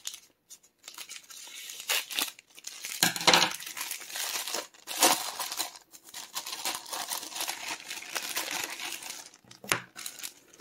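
Scissors cutting into a plastic packaging sleeve, then the plastic crinkling and tearing as hands pull it open, with the sharpest bursts about three and five seconds in.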